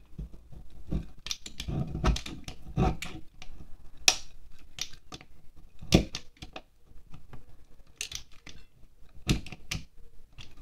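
Knife blade scraping and carving shavings off a wax pillar candle in irregular strokes, with a few sharp clicks among them.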